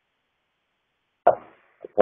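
Dead silence over a web-meeting audio line for just over a second, then a man's voice starts speaking again with an abrupt first word.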